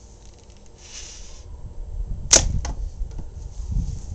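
A slingshot shot from 20-gauge amber latex bands firing a 3/8-inch steel ball: one sharp, loud crack a little past halfway through, then a fainter click a moment later.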